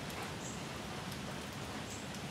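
Steady, even outdoor background hiss with no distinct events, of the kind light rain makes.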